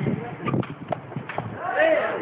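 A few sharp hollow knocks of a sepak takraw ball being kicked during a rally, with players' voices calling out near the end.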